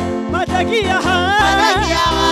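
Live gospel praise song: a woman sings the lead with quick, wavering pitch swings, one sung word ("ari") about half a second in, over an instrumental backing with a steady low beat.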